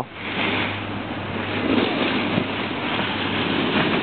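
Steady wind noise on the camera's microphone: a continuous rushing hiss with a low rumble underneath.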